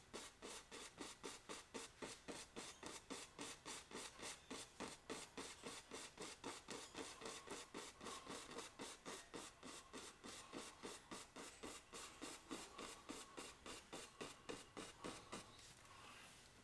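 Oil-painting brush tapping and stroking paint onto a stretched canvas. The faint strokes come in a steady rhythm of about four a second and stop just before the end.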